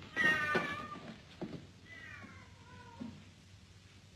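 A cat meowing twice, each meow falling in pitch. The first, at the very start, is the louder; the second, about two seconds in, is fainter.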